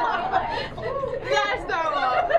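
Several people talking over one another, an overlapping chatter of voices.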